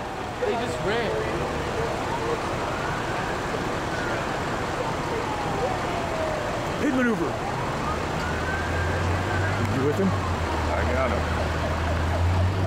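Emergency vehicle siren wailing, its pitch rising and falling slowly twice. A steady low engine hum comes in about two-thirds of the way through.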